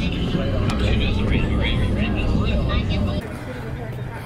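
Car in motion heard from inside the cabin: a steady low road and engine rumble with indistinct voices over it, which cuts off about three seconds in.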